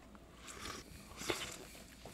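Faint mouth sounds of someone tasting queso from a feeding cone: a few soft, short smacking and rustling noises, with one small click a little past halfway.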